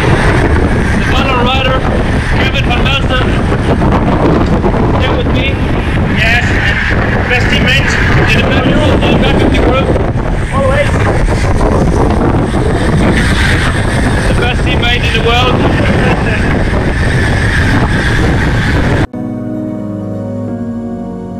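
Heavy wind roar on an action camera's microphone carried on a moving road bike, with a man talking over it. About a second before the end it cuts off abruptly to quieter background music.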